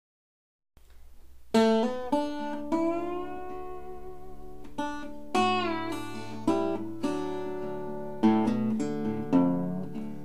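A c.1930s Musketeer faux resonator guitar, which has a metal cover plate but no resonator cone, played fingerstyle as a blues in open D tuning. The playing starts about one and a half seconds in, with plucked notes and chords, some of them sliding in pitch.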